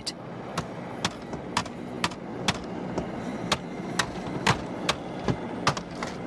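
Hammer blows on a BMW's engine bay, about two a second, struck to cure a faulty fly-by-wire throttle that makes the engine rev by itself. The blows are heard from inside the car, with the engine running steadily underneath.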